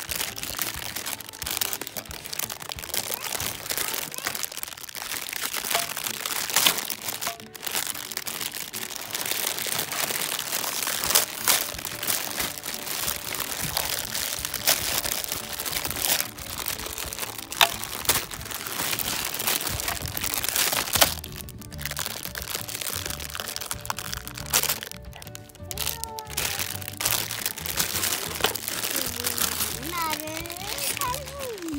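Clear plastic toy packaging crackling and crinkling as it is handled and torn open, over background music whose low bass notes come up in the last third.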